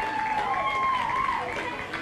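A person's drawn-out voice: long, held tones that slowly rise and fall, over steady background noise.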